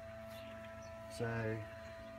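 Electric metering motor on a seed drill running at a steady speed with an even, one-pitch hum, turning the metering shaft during a ten-turn seed-rate calibration.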